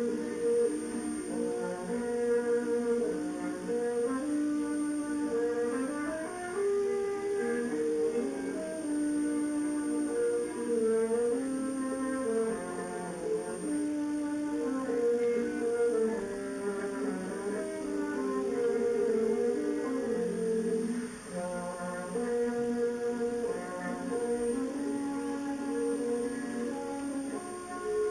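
Concert wind band (harmonie) playing a melodic passage of long held notes.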